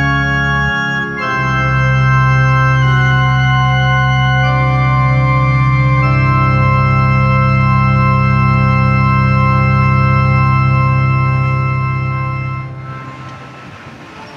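Organ playing slow sustained chords, changing a few times, then holding one long chord that fades away near the end.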